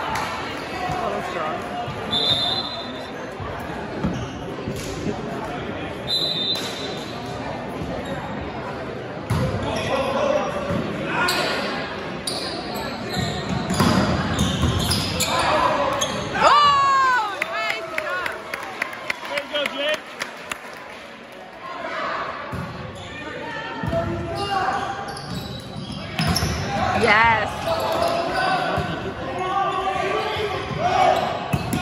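Volleyball being played on an indoor gym court: the ball being struck and hitting the floor, with quick high squeaks around the middle and again near the end. Players and spectators are talking and calling out throughout, and the sound echoes in the large hall.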